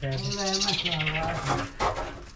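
A man singing wordlessly in long, held low notes that step up and down in pitch, with a brief scrape about half a second in and a couple of knocks near the end.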